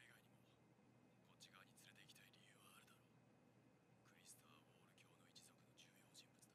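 Near silence, with faint, whisper-like speech in the background.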